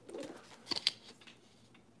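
Handling noise from camera gear being moved close to the microphone: a soft rustle and bump, then a few sharp clicks a little under a second in.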